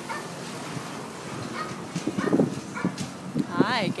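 African grey parrot vocalizing: a few short low sounds, then a high pitched call near the end that rises and falls.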